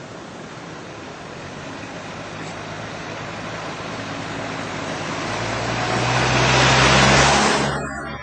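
A motor vehicle approaching and passing close by: engine and tyre noise swell steadily to a loud peak about seven seconds in, then cut off abruptly near the end.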